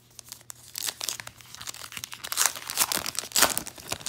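A 2019 Topps Allen & Ginter trading-card pack being torn open by hand, the wrapper crinkling and tearing in irregular bursts that grow louder through the second half.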